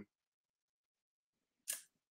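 Near silence on a video call, broken once near the end by a single short, hissy click.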